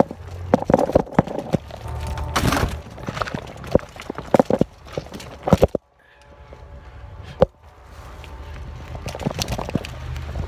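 Irregular footsteps on a dirt and rock forest trail, with knocks and a low rumble from the hand-held phone's microphone being jostled. The sound cuts out briefly about six seconds in.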